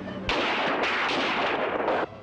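A dense barrage of gunfire from many guns at once. It breaks out suddenly a quarter of a second in and carries on without a break as overlapping shots.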